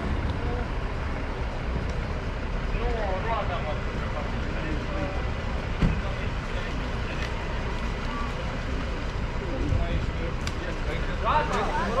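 Steady low rumble of a city bus standing at a stop with its engine running, over street traffic, with faint voices and a single thump about six seconds in.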